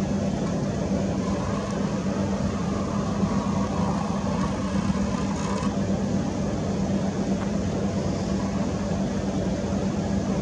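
A steady, unchanging low mechanical hum over a constant background noise.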